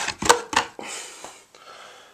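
Cardboard kit box holding two metal tins being handled: a few sharp knocks in the first half second, then a rustle of cardboard that fades out.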